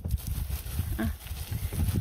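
A hand rustling and patting forest soil and pine needles back over a dug spot, over a low rumble of wind on the microphone. A brief spoken 'uh' comes about a second in.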